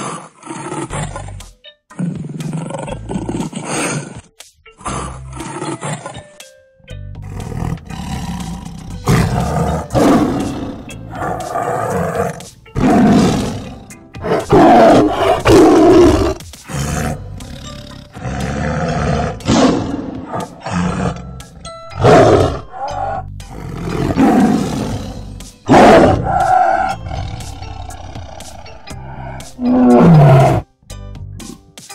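A tiger roaring repeatedly: loud calls every one to three seconds, starting about seven seconds in, over background music.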